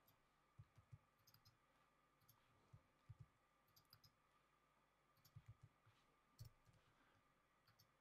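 Near silence with faint, scattered clicks of a computer mouse and keyboard, some single and some in quick pairs.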